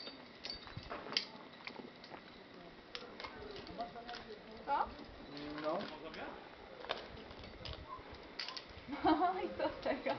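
Brief snatches of low voices with scattered light clicks and taps between them, the clicks typical of a trad climber's rack of metal gear and of hands and shoes on rock.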